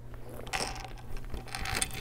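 Two short bursts of rustling and scraping, about half a second in and again near the end, from a clear plastic zip pouch and a quilted leather shoulder bag being handled.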